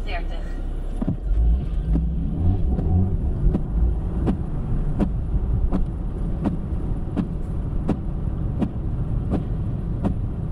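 Car interior road noise on a wet motorway, a steady low rumble, with the windscreen wipers ticking regularly, about once every 0.7 seconds.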